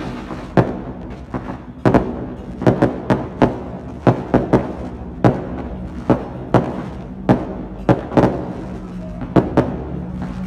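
Firecrackers going off one at a time, sharp bangs at irregular intervals of about two a second, over a steady low hum.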